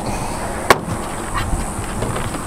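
Handling of a redfish and knife on a plastic cutting board on a truck tailgate: one sharp tap a little under a second in and a fainter one later, over steady outdoor background noise.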